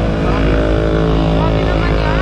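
Motor vehicle engine running steadily close by, a constant low hum with a rumble underneath.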